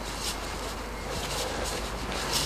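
Steady rushing background noise with a few faint footsteps on concrete.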